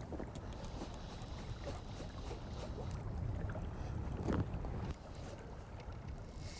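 Wind rumbling on the microphone over the steady flow of river water around a wading angler.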